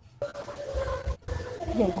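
A person's voice holding one drawn-out vocal sound at a steady pitch, breaking off briefly about a second in, then speech starting near the end.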